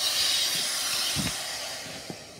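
A steady hiss that starts suddenly and slowly fades away, like a whooshing exit effect, with a soft bump about a second in.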